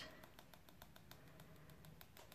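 Near silence with faint, rapid, even ticking from a wet paintbrush being flicked to spatter paint droplets onto watercolour paper.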